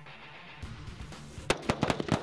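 A quick string of rifle shots from M16A4 service rifles firing 5.56 mm rounds, starting about one and a half seconds in, heard over background music.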